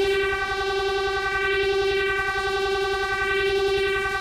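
Electronic dance track in a breakdown with no beat: one sustained synth note with a bright stack of overtones holds steady.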